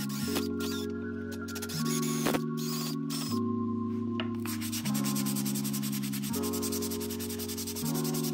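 A wooden furniture leg sanded by hand with a sanding pad. There are a few short scrapes at first, then a fast, steady back-and-forth rubbing through the second half, over background music.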